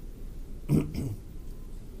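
A man's brief non-speech vocal sound, short and in two parts, about three quarters of a second in, likely the start of a cough or a throat-clear; otherwise quiet room tone with a low hum.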